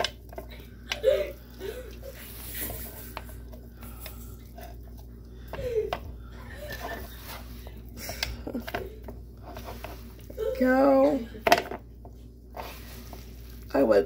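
Thick carrot cake batter being scraped out of a mixing bowl and dropped into a Bundt pan: soft scraping with a few light clicks and knocks. A voice breaks in briefly about ten and a half seconds in.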